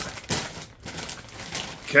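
A foil Doritos chip bag crinkling in irregular rustles as it is picked up and handled, with a sharper crackle about a third of a second in.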